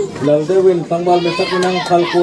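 Several people shouting and calling out over one another, one long held shout after another, as football players run and call during play.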